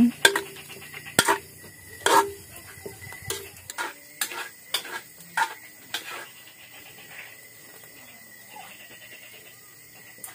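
Metal ladle knocking and scraping against a metal cooking pot as beef is stirred, a string of sharp clanks through the first six seconds, then quieter.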